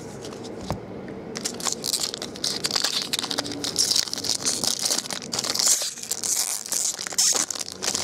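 A foil trading-card pack wrapper crinkling and rustling as it is opened by hand. It starts about a second and a half in, after quieter card handling, and keeps up as a dense, uneven crackle.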